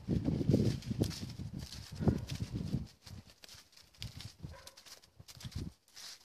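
Footsteps crunching through dry fallen leaves and undergrowth rustling as it brushes past, loudest for the first three seconds, then lighter, scattered steps.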